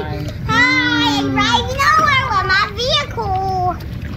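Children's high-pitched, excited voices calling out in a hot tub, over the steady low rush of the bubbling jets.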